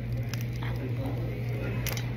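King crab leg meat and shell handled by hand over a metal bowl: a few faint clicks and soft squishes over a steady low hum.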